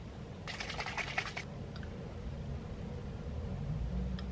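Plastic twist cap of a small juice-shot bottle being twisted open: a quick run of sharp clicks lasting about a second as the seal ratchets, followed by a couple of faint ticks.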